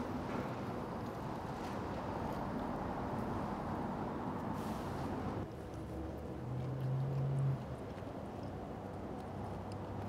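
Steady low background noise, with a man's short, closed-mouth 'mm' of approval about six and a half seconds in as he tastes a forkful.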